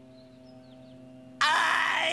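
A faint steady hum, then about one and a half seconds in, SpongeBob's cartoon voice breaks suddenly into a loud, held wail.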